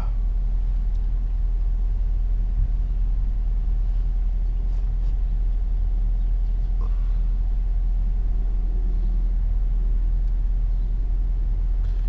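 Car engine idling, heard from inside the cabin as a steady low rumble with a faint steady hum above it.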